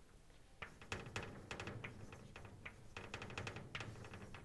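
Chalk writing on a blackboard: a run of quick taps and short scratching strokes, starting about half a second in, with the sharpest taps near the start.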